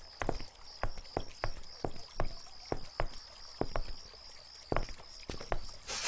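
Footsteps of two people walking on hard ground, a run of sharp knocks about two to three a second. Crickets chirp steadily in the background.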